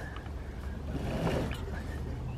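Gaff mainsail's throat halyard being hauled, with the rope running faintly through its blocks, over a steady low hum.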